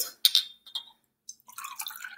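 Glass jars clink a couple of times as they are picked up. About a second and a half in, water starts to be poured from one small glass jar into another, trickling into the glass.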